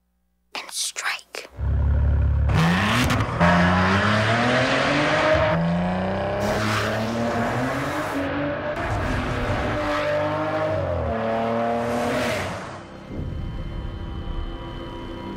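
Maserati Ghibli engine starting loud about a second and a half in, then accelerating hard. Its pitch climbs and drops several times as it shifts through the gears, and it fades out near the end.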